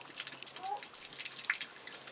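Faint trickling and spattering of water running through a garden hose being primed and spilling out onto the snow at a small transfer pump, with a dense crackle of small drips.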